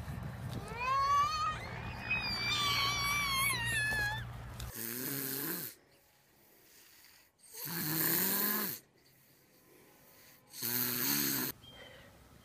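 A sleeping young child snoring loudly three times, each snore about a second long with a pause of a couple of seconds between. Before that, in the first few seconds, high squeaky chirping glides.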